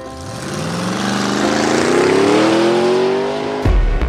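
Car engine accelerating hard, its note rising steadily for about three and a half seconds under a loud rushing hiss. It cuts off suddenly near the end as electronic music with a heavy drum beat starts.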